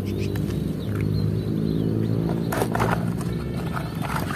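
A low, steady droning hum with a constant pitch throughout. A few knocks about two and a half seconds in, as plastic toys are handled in a tub.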